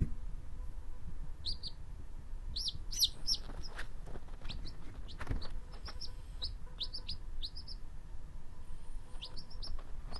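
Quail chick peeping: short, high chirps that come in scattered runs of two to five.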